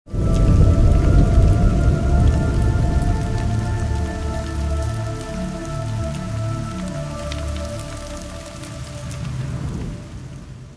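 Cinematic logo-intro sound design: a deep rumble with pulsing bass under sustained synth tones, with a crackling, rain-like hiss. It is loudest at the start and slowly fades.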